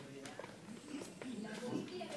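Faint, distant voices chattering, with a few light clicks.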